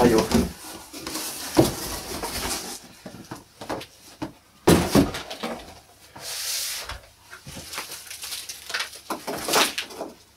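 Cardboard shipping box being lifted off and set aside: irregular rustling and scraping of cardboard with several knocks, and a longer scraping rub a little past the middle.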